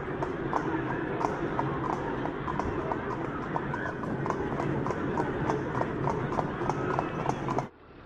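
Horse hooves clip-clopping on a street, about three steps a second, over a background murmur of voices; the sound cuts off suddenly near the end.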